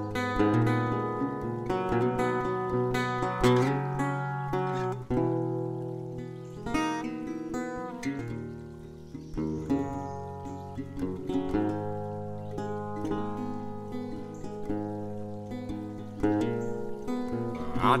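Acoustic guitar playing an instrumental break in a country-folk song, picked and strummed chords without vocals. The singing comes back right at the end.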